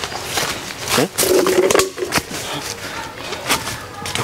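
A voice crying out, held for about half a second, over rustling and crackling of leaves and brush underfoot.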